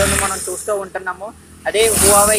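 A man talking to the camera, with a short hissing noise at the start and again near the end.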